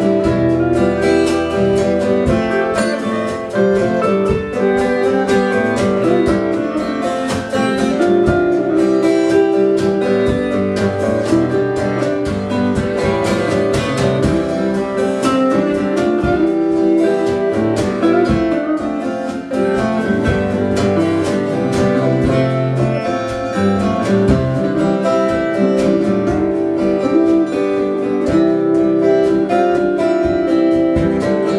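A small live band playing an instrumental passage with no vocals: strummed acoustic guitar, electric lead guitar and a drum kit keeping a steady beat.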